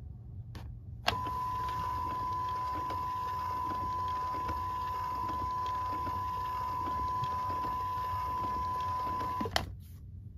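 Fisher-Price Linkimals penguin toy in its test mode, sounding one steady, high electronic test tone. It starts with a click about a second in and cuts off with a click near the end, with a faint mechanical whir from its moving wings underneath.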